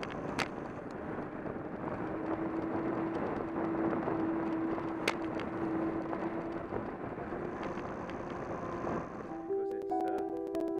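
Wind and road noise picked up by a bicycle-mounted camera while riding on tarmac, a steady rushing with a few sharp knocks and a faint steady hum in the middle. Piano music comes in near the end.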